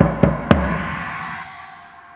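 Drum and suspended cymbal struck with a mallet: three quick deep drum hits over a ringing cymbal wash that fades away over about a second and a half.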